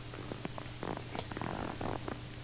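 Faint rustling and a few small clicks, mostly in the second half, over a steady low hum.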